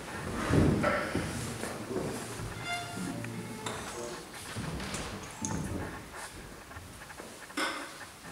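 String ensemble of violins, cellos and double bass playing a quiet, sparse passage: short separate notes and a few briefly held tones, thinning out toward the end.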